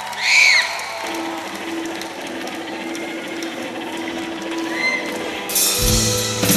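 Concert crowd noise under a low held note, with a loud whistle from the audience near the start and a fainter one near the end. About five and a half seconds in, the band comes in with drums and cymbals.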